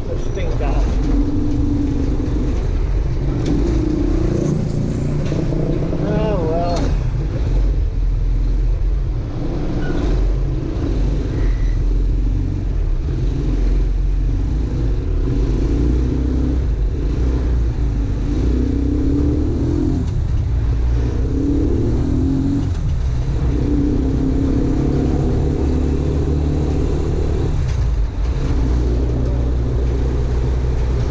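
Small motorcycle engine of a covered tricycle running under way, with a steady low rumble throughout and its engine note swelling and dropping in stretches of a few seconds.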